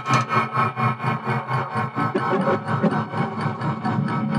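Percussive experimental techno built from recordings of found metallic objects: a dense, fast run of clicks and knocks over a steady low drone.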